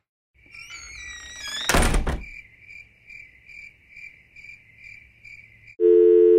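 Edited-in sound effects: whistling tones glide upward, a loud thunk lands about two seconds in, and then a high chirping tone pulses about twice a second. Just before the end a loud, steady telephone dial tone starts.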